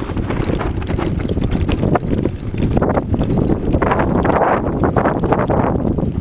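Mountain bike rolling down a rough dirt trail: tyres crunching over gravel and stones, with rapid knocks and rattles from the bike over the bumps, loudest about four to five seconds in.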